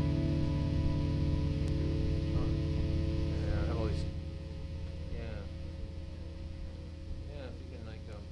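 Electric guitar and amplifier rig humming and buzzing steadily while it is being hooked up. About four seconds in it drops sharply to a quieter, steady mains hum.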